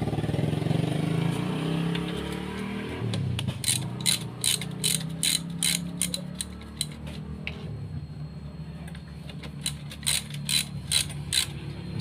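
Socket ratchet wrench clicking as it is swung back and forth on a scooter's engine oil drain bolt, in runs of about three clicks a second, over a steady low hum that is loudest in the first few seconds.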